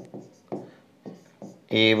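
Stylus tapping and scraping on the glass of an interactive display while handwriting a word: a sharp tap at the start and a few faint ticks in the first half second, then little until a man's voice resumes near the end.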